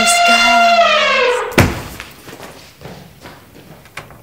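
Elephant trumpeting sound effect: one long, loud, brassy call that falls slightly in pitch, then a heavy thud about a second and a half in, after which the sound dies away.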